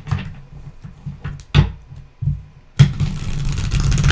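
A tarot deck being shuffled by hand: the cards rustle and slap together in irregular bursts over dull low knocks, with the sharpest slap nearly three seconds in and a dense rustle after it.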